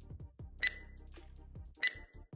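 Two short, high electronic beeps about a second apart from a training timer, signalling the start of a drill interval, over faint background music.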